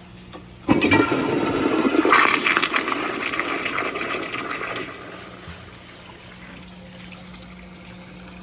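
American Standard Glenwall toilet flushing a load of two-ply toilet paper: a sudden rush of water starts about a second in and stays loud for a few seconds, then trails off to a quieter steady run of water.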